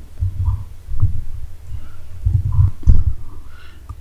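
Low, uneven rumbling picked up by the microphone, with two stronger dull thumps about one second and three seconds in.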